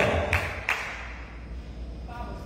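A pause in a large hall: the echo of a man's last word fades, two soft taps come about a third of a second apart, and then only a low steady hum is left.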